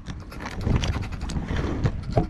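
Handling noise from a handheld camera being moved about: irregular knocks and rubbing over a low rumble of wind on the microphone.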